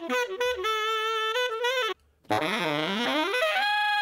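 A recorded saxophone phrase played back through a compressor set with a slow attack and a shortened release. It runs as a series of notes, breaks off briefly about two seconds in, then goes on with bending notes that rise to a long held higher note near the end.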